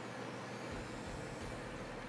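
Quiet steady background hiss of room tone with no distinct event, and a faint thin high-pitched whine.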